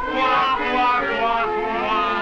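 Men's voices singing a crooned closing phrase with a wobbling, sliding pitch, over a film-musical orchestra holding its chord, on an early-1930s soundtrack.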